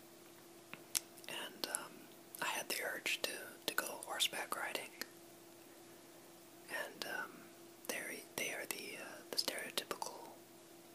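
A person whispering in two stretches, with a pause of about two seconds between them, over a faint steady hum.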